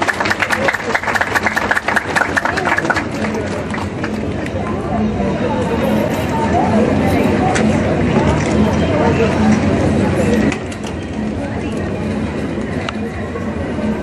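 A crowd clapping for the first few seconds, then a hubbub of crowd voices. The noise drops suddenly about ten and a half seconds in.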